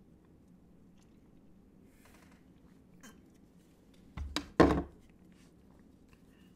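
Drinking from a soda can at the microphone: faint sips and swallows, then two short, louder sounds a little over four seconds in.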